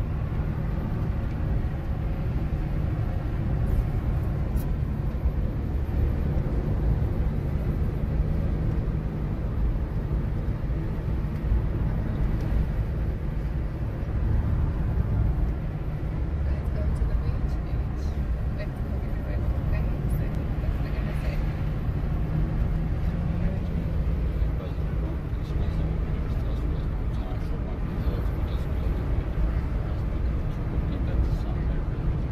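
Nissan March 12SR hatchback with its 1.2-litre four-cylinder engine, heard from inside the cabin while cruising on an asphalt road: a steady low engine and tyre rumble with road and wind noise, level throughout.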